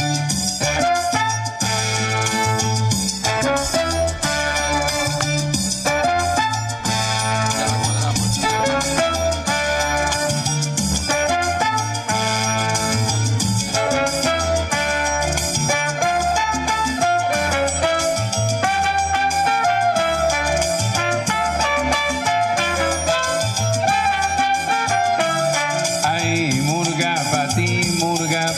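Salsa instrumental section: violin and trumpet playing the melody over a bass line and steady percussion.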